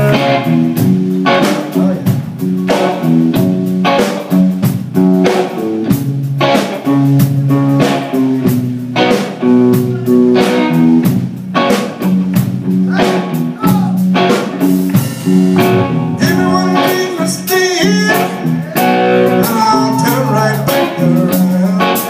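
Live blues band playing with electric guitars, keyboard and drums over a steady beat, with bending guitar lines in the last few seconds.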